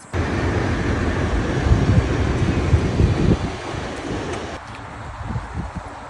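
Wind buffeting the phone's microphone: a loud, gusty rumble that starts abruptly and eases off after about four seconds.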